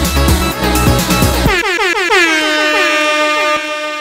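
Club dance music with a heavy beat. About a second and a half in, the beat and bass cut out and a DJ air-horn effect takes over: a rapid stutter of blasts gliding down in pitch and settling into a steady tone, fading as the mix ends.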